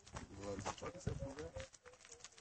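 Faint, indistinct talking in the background, with scattered light clicks and taps.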